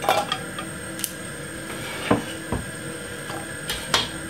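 Carrot slices dropped by hand into a non-stick frying pan of oil, making a few separate light knocks against the pan.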